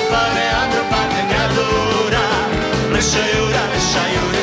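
Romani folk band playing live: a violin melody over strummed acoustic guitars and a steady beat.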